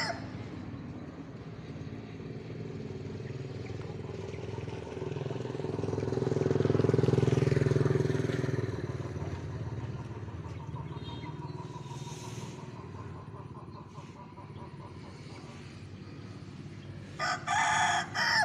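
A motor vehicle engine passes by, swelling to its loudest about midway and then fading. Near the end a rooster crows once.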